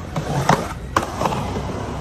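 Skateboard trucks and wheels on concrete ledges: a rolling, scraping rumble broken by sharp clacks of the board, the loudest about half a second in and another about a second in.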